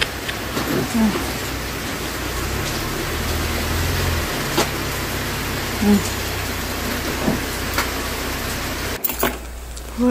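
Cadillac SUV's engine idling steadily, a low even hum with a noise haze over it, cutting off suddenly about a second before the end.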